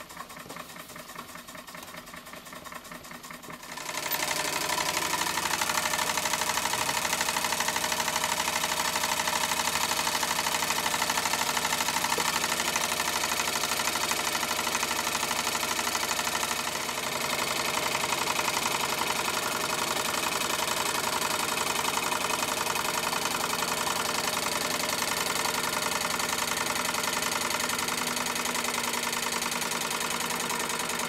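Stuart S50 model steam engine starting up about four seconds in and then running steadily on steam, with a rapid, even beat.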